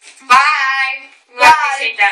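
A young girl's voice singing two drawn-out notes, the first held longer than the second.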